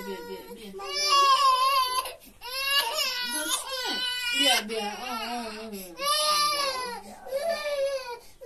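Infant crying in a series of loud, high-pitched wails, each lasting a second or two with short breaks between them.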